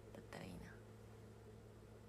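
A faint, breathy whisper from a young woman, about half a second in, then near silence with a low steady hum.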